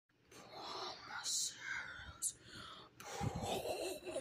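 A person whispering, breathy and unvoiced, with short hissing consonant sounds.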